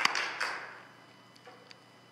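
The last scattered hand claps of a congregation's applause, fading out within the first second, then a quiet sanctuary with a couple of faint taps.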